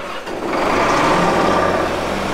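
Case IH Quadtrac tractor's diesel engine starting after its dead battery is boosted, getting louder about half a second in and then running steadily.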